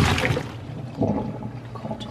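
Cooking water and boiled potato chunks poured from a pot into a plastic colander in a stainless-steel sink, the water splashing and running off down the drain. The pour is loudest at the start, with a second gush about a second in.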